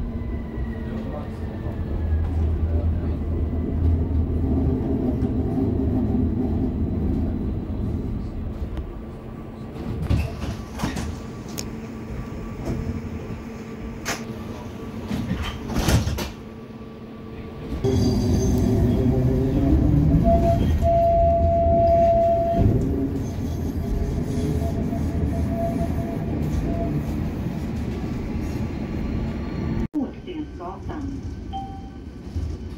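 A tram running along the rails, then slowing and standing still from about eight seconds in, with door-mechanism clicks and knocks while it waits at the stop. At about eighteen seconds it pulls away, the rolling noise coming back loud and the electric traction motor whining as it speeds up.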